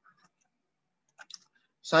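A few quick, light computer mouse clicks a little over a second in, closing a software pop-up window.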